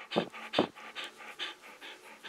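A dog panting right at the microphone, quick rhythmic breaths about two to three a second, louder in the first second and softer after.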